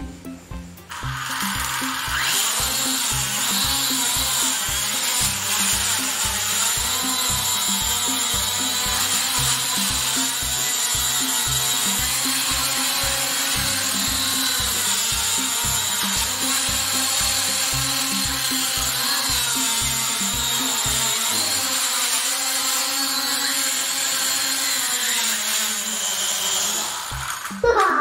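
Small toy quadcopter drone's motors and propellers running with a steady high whine whose pitch wavers a little; it starts about a second in and cuts off just before the end. Background music with a regular beat plays underneath until about three-quarters of the way through.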